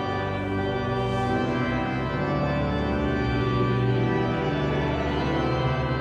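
York Minster's pipe organ playing sustained chords over deep bass notes.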